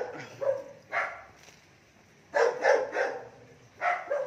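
Pet dog barking in short, separate barks: single barks in the first second, a quick run of three about two and a half seconds in, and one more near the end.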